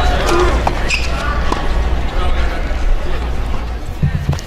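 Tennis ball struck by rackets on a serve and the rally that follows: a few sharp pops spaced a second or more apart, over a steady low rumble and background voices.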